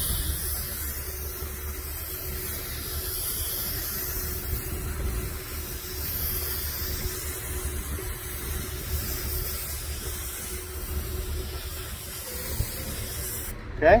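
Compressed-air gravity-feed spray gun, run at about 50 PSI, hissing steadily as it sprays a ceramic coating, cutting off suddenly near the end.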